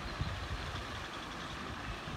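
Steady outdoor background noise: an even hiss over a low rumble, with no single clear source standing out.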